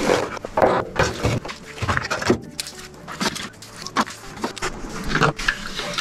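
Split firewood logs set into the steel firebox of a wood-burning fireplace insert on top of banked coals: a run of irregular wooden knocks and clunks against wood and metal. The insert's metal door is handled and shut near the end.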